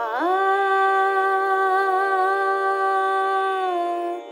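A woman sings one long held note, scooping up into it at the start and holding it with a slight waver, then stepping down to a lower note near the end, over a steady drone accompaniment.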